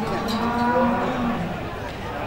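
Limousin cattle mooing: one moo of about a second and a half, held at a steady pitch.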